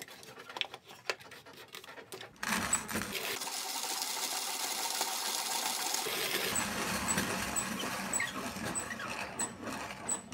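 1930s Dienes 915 manual conical burr coffee grinder grinding coffee beans at its finest setting, burrs just touching. A few light clicks, then from about two seconds in a dense, steady grinding noise as the crank is turned, with faint regular ticks about twice a second in the later part.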